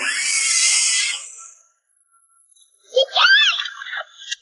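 A sudden hissing rush of noise that fades away over about a second and a half. After a short silence, a girl's high, wavering scream comes in near the end.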